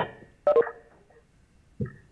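A few short, clipped fragments of a voice coming through a video-conference line. One comes about half a second in and a briefer one near the end, with lulls between.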